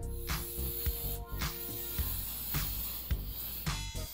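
Aerosol cooking-oil spray hissing in a long continuous spray over seasoned salmon fillets in an air fryer basket, stopping shortly before the end, over background music with a bass beat.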